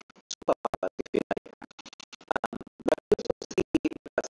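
Choppy, stuttering fragments of a voice, broken several times a second by abrupt dropouts into silence, too garbled for words to be made out.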